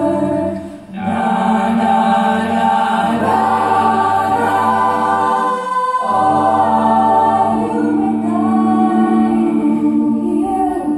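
Mixed high school jazz choir singing an a cappella arrangement, several voice parts held together in sustained chords. There is a short break about a second in, and the low bass voices drop out briefly a little past the middle before coming back in.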